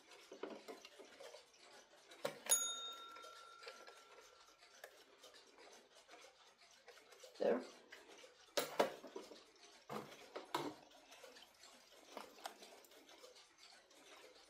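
Mechanical twin-bell alarm clocks being handled and set down on a shelf: scattered knocks and clicks, and one ding from a clock bell about two seconds in that rings on for about two seconds.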